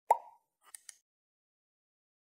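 Sound effects of an animated subscribe button: a single sharp pop, then a quick faint double mouse click a little over half a second later.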